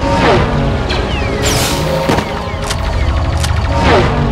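Sci-fi blaster shots, each a quick falling-pitch zap, and explosions mixed over background music.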